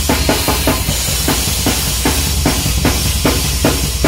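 Tama drum kit with Paiste cymbals played in a live metal drum solo: a steady, fast bass drum underneath, snare and tom strokes at about three a second, and a constant wash of cymbals on top.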